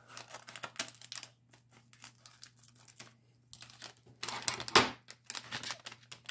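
A LEGO minifigure blind-bag packet crinkling as it is snipped open with small scissors and pulled apart, with a louder stretch of crinkling and tearing about four seconds in.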